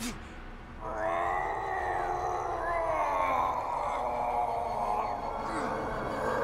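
A short sharp hit, then about a second in a man's long, strained groan that slides down in pitch and back up, lasting some four seconds.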